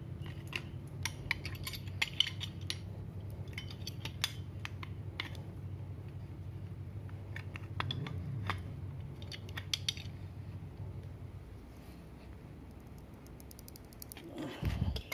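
Scattered light metallic clicks and clinks of an adjustable wrench and a brass stop valve being handled and turned while a PVC socket is tightened onto the valve's thread, most of them in the first ten seconds. A steady low hum runs underneath.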